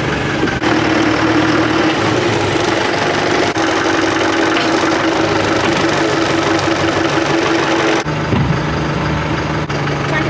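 Tractor diesel engine running steadily, heard while it works a front loader. The engine's pitch jumps abruptly twice, about half a second in and again near the end, dropping to a lower, steadier hum for the last couple of seconds.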